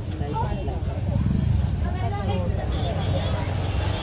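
Busy market ambience: indistinct voices talking in the background over a steady low rumble.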